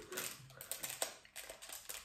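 Faint, irregular clicks and taps, several of them scattered through a quiet pause.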